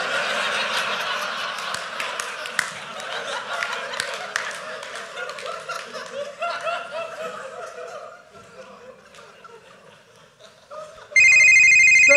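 Audience laughter with scattered claps, loud at first and dying away over about eight seconds. Near the end a telephone starts ringing loudly, a steady pulsing ring.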